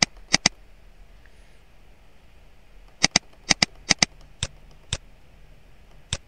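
Computer mouse button clicking: two quick clicks just after the start, then, after a pause of over two seconds, a run of about eight clicks, several of them in close pairs.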